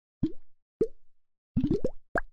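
Cartoon pop sound effects, each a short bloop rising in pitch: two single pops, then a quick run of about five in a row near the end.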